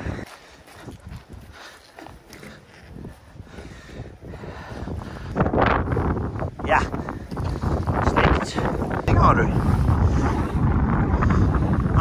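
Wind buffeting the microphone, getting much stronger about five seconds in, with brief indistinct voices over the rumble.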